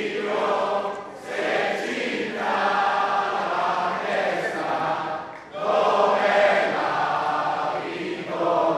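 A large hall audience singing an anthem together unaccompanied, because the backing track has failed to start. The singing comes in long phrases with short breaks for breath, about a second in and again at about five and a half seconds.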